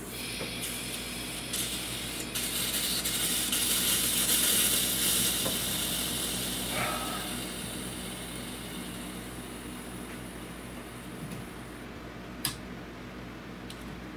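Hand work down in a truck's engine bay: several seconds of scraping and rustling of parts, then one sharp click about twelve seconds in, over a steady low hum.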